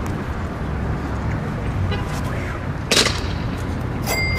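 A single sharp smack about three seconds in as a pitched baseball strikes the smart target board, over a steady low rumble of city traffic.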